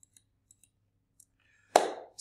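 A few faint, short clicks in near silence, then a short burst of the presenter's voice near the end as he starts speaking again.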